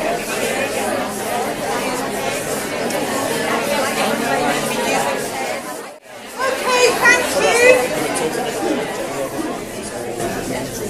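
Hall full of audience members talking among themselves at once, a busy hubbub of overlapping conversation. About six seconds in the sound drops out for a moment before the chatter resumes, with nearer voices standing out more clearly.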